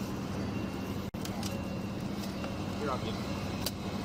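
Steady low engine hum, with faint voices in the background and a brief dropout about a second in.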